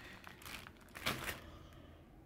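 Clear plastic bag crinkling as it is handled, with a louder crinkle about a second in.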